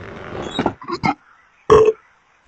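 Three short voice-like sounds warped by an audio effect, the last and loudest near the end.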